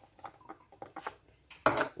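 Chunks of onion tipped from a plastic bowl into a glass food-chopper bowl: a run of light, irregular taps and clinks.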